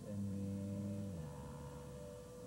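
A calm voice from a relaxation recording draws out a long "and…" over a steady droning tone. The voice falls away just over a second in, leaving the drone.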